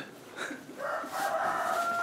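A rooster crowing: one long call that starts about half a second in, rises, then holds a steady note.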